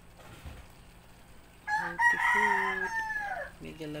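A rooster crowing once, starting a little before halfway through: one long call of about two seconds that falls in pitch at the end.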